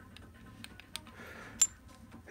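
Faint metallic clicks of a Simson M53 gearbox gear being worked by hand on its shaft to check its play, with one sharper, ringing metal click near the end. The play is within tolerance.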